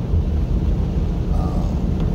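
Steady low rumble of a moving car, engine and tyres on wet pavement, heard from inside the cabin.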